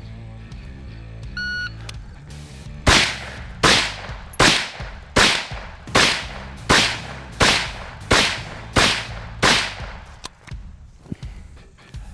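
A shot timer beeps once, then an AR-style carbine fires ten single shots at an even pace, about one every 0.7 seconds: a timed string of 10 rounds against a 10-second par, finished in about eight seconds. Background music runs underneath.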